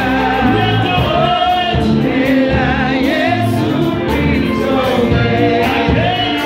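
Live gospel worship music: a group of singers sing together with a band of keyboard, electric guitar and drums, holding long, wavering notes over a steady bass.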